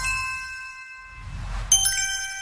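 Logo-intro sound effects: a bright bell-like ding rings with several tones and fades over a low rumbling swell, then a second ding with another low swell strikes near the end.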